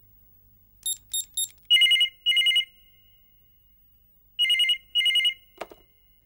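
Electronic ringer of a push-button landline telephone: three short high beeps, then two double rings, each a pair of warbling two-tone bursts. Near the end a click as the handset is lifted off the cradle, answering the call.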